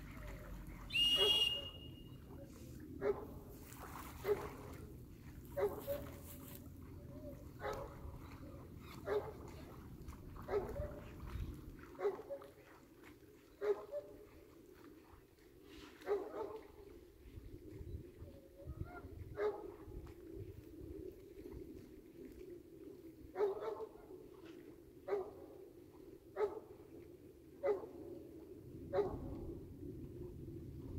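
A dog whining in short, repeated cries, about one every second or two. A brief high whistle sounds about a second in.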